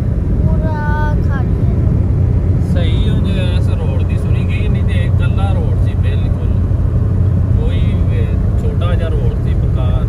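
A car's engine and tyres giving a steady low rumble, heard from inside the cabin while driving along a road, with voices talking intermittently over it.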